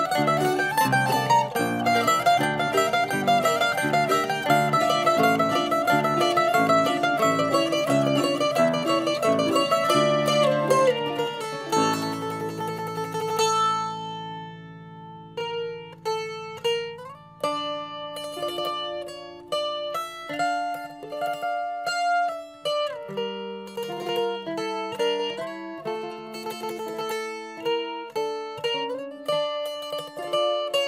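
Mandolin music, picked rapidly in a dense run of notes for roughly the first eleven seconds. It then thins out over a low held note, drops quieter for a moment, and goes on with slower, separate plucked notes.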